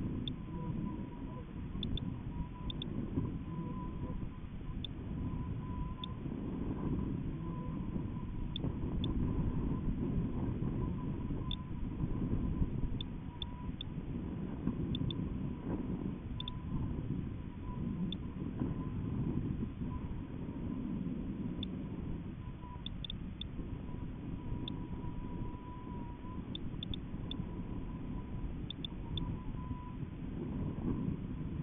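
Low, steady rumble of air buffeting the microphone of a high-altitude balloon's onboard camera in flight, with a faint thin tone that comes and goes and a scattering of faint ticks.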